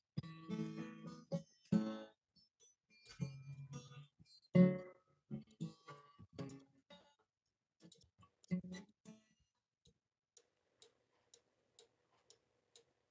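Eight-string baritone acoustic guitar, tuned a fifth lower than a standard guitar, being played. It comes through a video call broken up into short fragments of notes with silent gaps between them, and drops to near silence over the last few seconds. The call's audio is cutting the guitar out, so the far end can't hear it properly.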